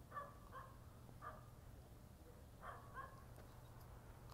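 Near silence between sentences, with five faint, short animal-like calls: three in the first second and a half, then two close together about three seconds in.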